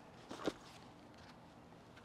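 Faint handling of a fabric sling camera bag, with one short click or knock about half a second in.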